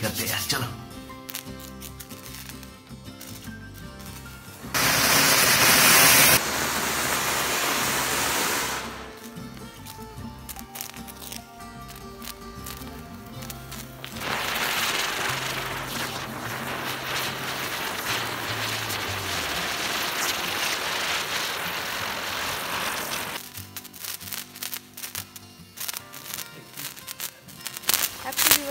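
Ground firework fountain hissing as it sprays sparks, in two long spells: a loud one from about five seconds in lasting around four seconds, and a steady one from about fourteen seconds lasting nearly ten seconds. Background music plays throughout.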